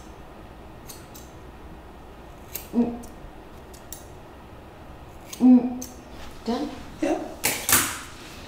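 Hair-cutting shears snipping through thick curly hair, a few short sharp snips spread out, with a louder rustle of hair being handled near the end.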